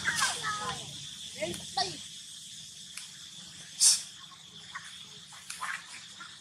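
Steady high drone of insects outdoors. Indistinct voices come through in the first two seconds, and a brief hissing burst is heard about four seconds in.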